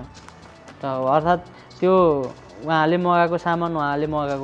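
A man talking in short phrases with brief pauses; no other sound stands out.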